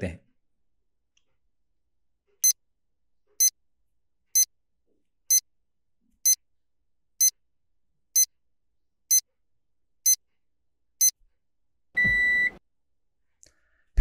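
Countdown timer sound effect: ten short, high beeps just under a second apart, then one longer, lower beep marking the end of a ten-second hold.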